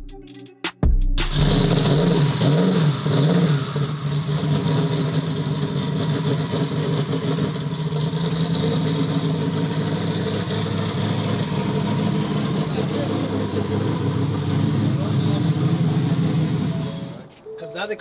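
A drag-race vehicle's engine running loudly. Its pitch moves up and down over the first couple of seconds, as if revved, then it holds at a steady idle until it cuts away near the end.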